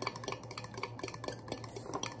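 Metal spoon stirring a barbecue sauce mixture in a small glass bowl, clicking lightly and irregularly against the glass.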